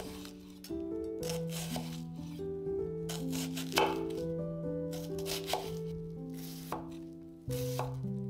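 A chef's knife slicing through an onion and striking the wooden cutting board, a crisp cut roughly every second, the loudest about halfway through, over background music with sustained notes.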